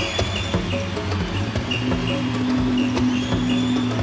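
Live percussion solo on a small hand drum held under the arm and struck by hand in a quick, regular rhythm, with a low held tone coming in about two seconds in.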